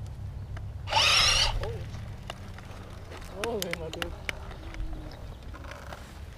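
A person's short, high-pitched shout about a second in, then a brief bit of voice a couple of seconds later, over a low steady rumble.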